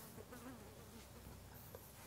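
Near silence: faint room tone during a pause in the narration.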